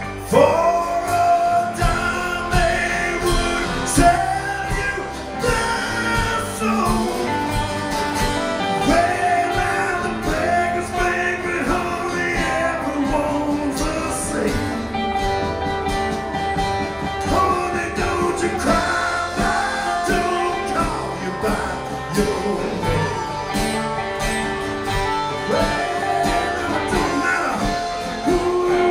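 Live band playing an instrumental passage on acoustic guitars, upright bass and drums, with a lead melody of sliding, bent notes over the strummed chords.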